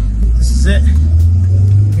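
Bus engine running, heard from inside the cabin as a loud, steady low drone.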